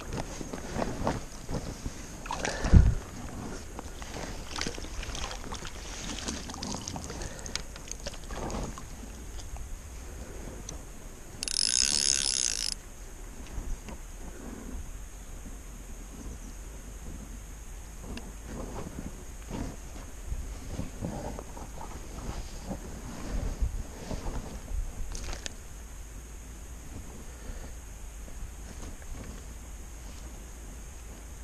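Wind on the microphone with rustling and knocking from handling a landing net and fishing rod, including one loud thump about three seconds in and a short buzzing rasp about twelve seconds in.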